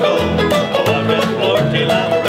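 A bluegrass street band playing an uptempo tune: banjo and acoustic guitar picking over upright bass notes on the beat.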